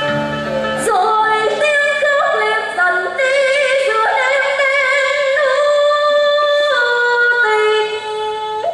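A woman singing a cải lương melody in a high voice, holding long notes with vibrato and sliding between pitches, over instrumental accompaniment. Only the accompaniment is heard at first, and the voice comes in about a second in.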